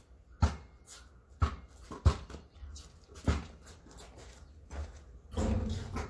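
A basketball bouncing on a concrete driveway as it is dribbled: four sharp bounces roughly a second apart, then a longer, louder noise near the end.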